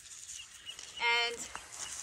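Faint patter of granular fertilizer tossed by hand onto soil and mulch, with a single spoken word about a second in.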